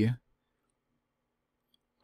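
A man's speaking voice trailing off at the very start, then near silence with a faint click or two, likely the mouth or a mouse.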